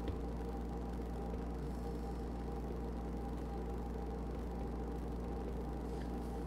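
Steady background hum with faint hiss from the recording setup, no distinct events apart from a faint tick at the very start.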